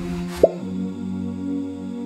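Sustained wordless vocal humming as background, with a single short rising 'plop' sound effect about half a second in.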